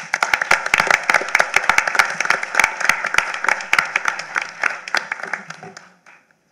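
Audience applauding, with many hands clapping densely at once and tapering off near the end.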